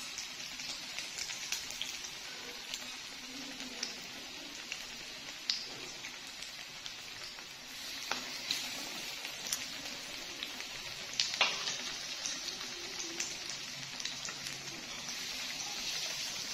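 Hot oil sizzling steadily as chicken-potato cutlets shallow-fry in a pan, with scattered sharp pops and a louder flare of sizzling about eleven seconds in.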